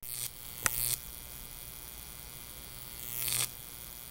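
Jacob's ladder: a high-voltage electric arc buzzing between two diverging wires over a steady electrical hum. It surges louder and hissier twice, about half a second in and again near the end, with one sharp snap in the first surge.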